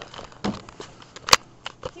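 Light clicks and knocks of things being handled, with one sharp, loud knock about two-thirds of the way through.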